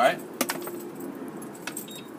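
A bunch of keys with a remote fob jingling in a hand, with a few short sharp clinks.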